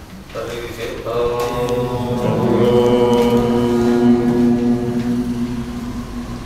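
A man's voice chanting a mantra, drawing out a single syllable on one almost level note for about five seconds.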